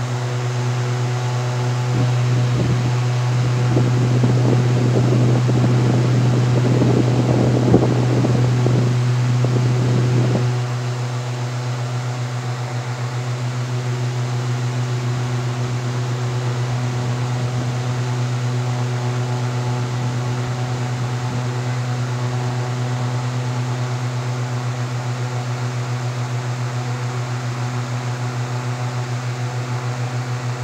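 Steady low hum of an electric appliance motor running in the room. From about two seconds in, a rougher rushing noise lies over it and stops abruptly about ten seconds in.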